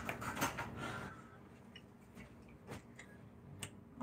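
A few faint, scattered clicks and ticks over quiet room tone.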